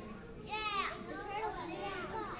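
Faint, high-pitched voices of young children in the audience, one child's voice rising and falling about half a second in, then softer chatter.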